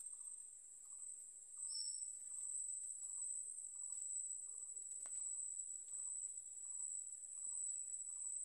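Insects trilling in a continuous, steady, high-pitched drone. Beneath it a softer short pulse repeats about every two-thirds of a second, and a brief high note sounds about two seconds in.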